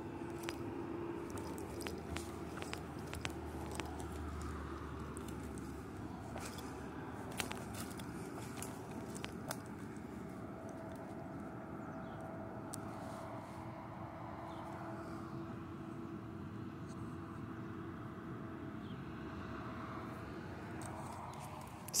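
Footsteps crunching and rustling over the ground, with scattered light clicks, over a faint steady hum.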